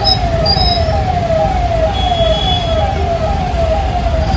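An electronic siren sounding a falling tone about twice a second, over the low rumble of idling traffic in a jam.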